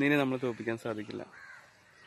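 A man's voice speaking for about the first second, ending with a drawn-out syllable, then stopping; a faint, brief higher sound follows before a quiet stretch.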